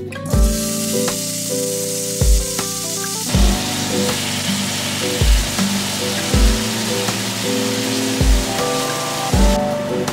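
Sliced, seasoned chicken sizzling in hot oil in a cast iron skillet. The sizzle grows fuller about three seconds in and thins slightly near the end, under background music with a steady beat.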